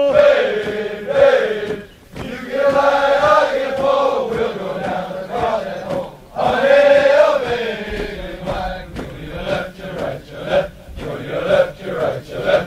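Male voices chanting a military cadence in drawn-out sung phrases, with shorter, choppier phrases after about eight seconds.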